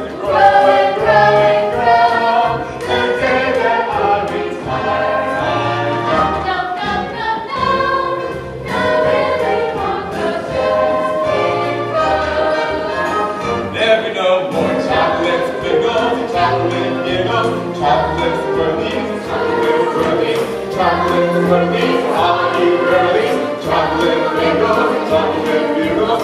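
A chorus of many voices singing a musical-theatre number over instrumental accompaniment with a bass line.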